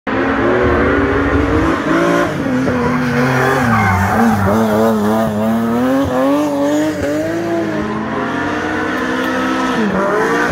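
Rally car engine revving hard through a hairpin, its pitch falling and rising repeatedly as the driver brakes, shifts and accelerates.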